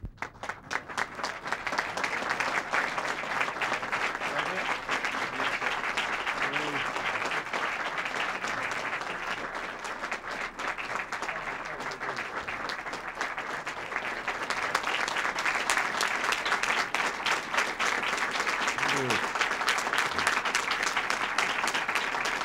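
A roomful of people applauding, building up over the first couple of seconds, then running steadily and growing a little louder about two-thirds of the way through.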